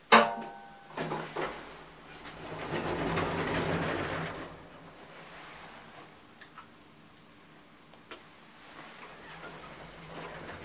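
KONE Monospace elevator car: a car-call button pressed with a short electronic beep, then a couple of clicks and the doors sliding shut with a motor hum for about two seconds. After that comes a quieter stretch with a few faint clicks.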